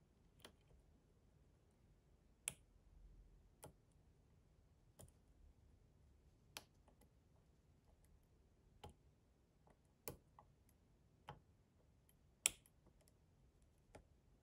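Faint metal clicks of a dimple pick working the pin-in-pin pins of a Mul-T-Lock Integrator cylinder under tension, about ten single clicks at irregular intervals, the loudest near the end.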